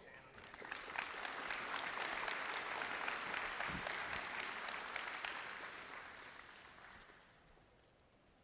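Audience applause, rising in the first second, holding steady, then fading away about six to seven seconds in.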